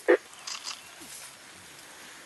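A single short, loud grunt just after the start, followed by faint soft sounds.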